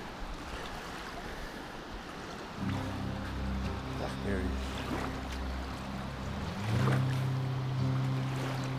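Umpqua River rushing past, with a steady low hum joining about two and a half seconds in; the hum shifts pitch in steps and grows louder near the end.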